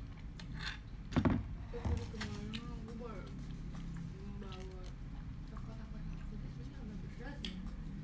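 A sharp knock about a second in, then a person humming softly in short gliding phrases, with a few small clicks of eating and handling.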